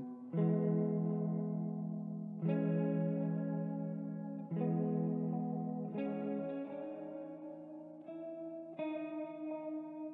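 Slow ambient music from a single clean guitar run through effects: a chord struck about every two seconds, each left to ring and fade into the next.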